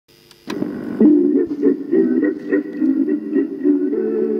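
Opening bars of a TV theme tune: a bouncy run of short melodic notes in the middle register, coming in fully about a second in after a click. It is a low-quality cassette recording made from a television's speaker.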